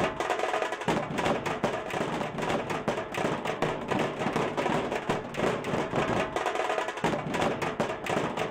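A procession drum band: several drummers beating large stick-played drums in a fast, dense, continuous rhythm.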